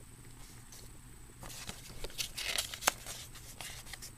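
Paper rustling as the pages of a CD booklet are turned by hand, with a few sharp crinkles, starting about a second and a half in.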